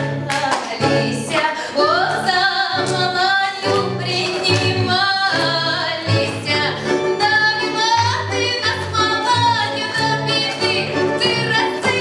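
A woman sings a lively Russian folk song with a folk ensemble of domra, gusli and button accordion, over an even, pulsing bass line.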